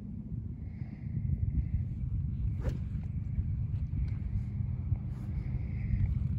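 Steady low rumble of wind buffeting the microphone, with one faint click about two and a half seconds in.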